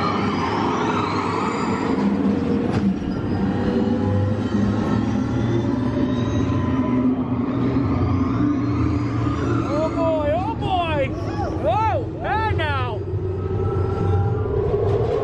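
Test Track ride vehicle running through a dark show scene with a steady low rumble, while its onboard soundtrack plays electronic sweeps that rise in pitch near the start. About ten seconds in comes a burst of warbling, bending synthesized tones.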